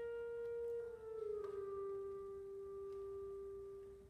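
Woodwind instruments holding a soft, long sustained note that steps down a little in pitch about a second and a half in, then fades away near the end.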